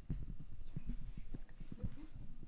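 A run of irregular soft knocks and thumps, several a second.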